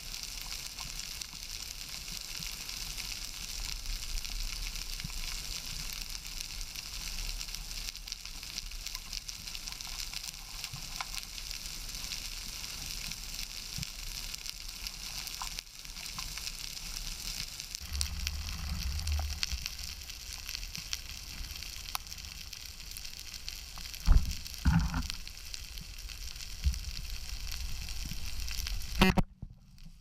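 Steady underwater crackling of the seabed, heard through a camera housing, with a few dull thumps about 24 seconds in. It cuts out suddenly just before the end.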